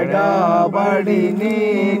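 A man singing a slow, chant-like devotional melody in Telugu, with long held notes that slide in pitch.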